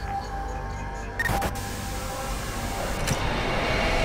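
Sound design for an animated channel logo sting: a steady low hum with held electronic tones, punctuated by a sharp hit about a second in and another about three seconds in, growing louder toward the end.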